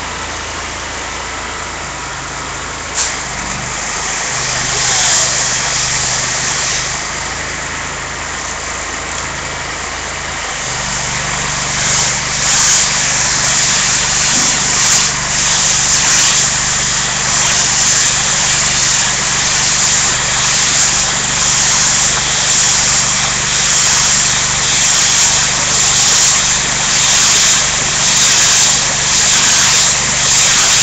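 A vehicle engine running steadily at idle; about eleven seconds in, its low hum becomes louder and steadier, and a broad hiss grows louder and flickers.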